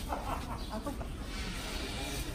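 Indistinct voices of people talking close by, in short broken bits during the first second, over a steady low rumble.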